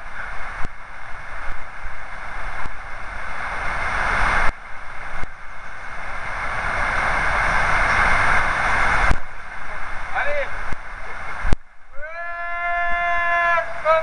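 Steady rushing of river water below a stone bridge, growing louder for about nine seconds. Near the end a long, high, held call rings out for a second and a half.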